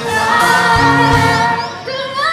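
Music: a male singer's voice over choir and band backing from a live stage performance, with the voice gliding upward near the end.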